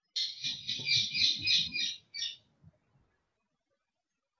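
A bird chirping shrilly in quick pulses, about four a second, for a little over two seconds before it stops.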